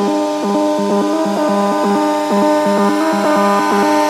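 Electronic dance music played from a DJ mixer: a repeating melodic synth riff, with no deep bass or kick drum under it.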